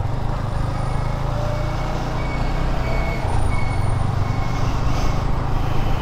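Motorcycle engine running steadily in third gear at low road speed, with a constant low rumble of road and wind noise.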